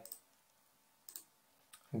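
Two computer mouse clicks over near silence, one about a second in and a fainter one just before the end.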